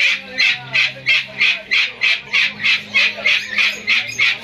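A white, yellow-crested cockatoo giving a long run of short, harsh calls, evenly spaced at about three a second.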